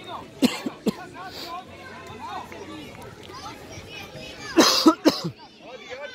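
Children's voices calling and shouting across a youth football pitch, with a few loud, sudden bursts close to the microphone: a pair about half a second in and a cluster of three just before the end.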